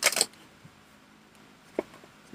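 A tarot deck being shuffled by hand: a short rush of cards sliding together right at the start, then quiet handling and one light click near the end.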